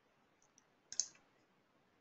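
A single short computer-mouse click about a second in, against near-silent room tone.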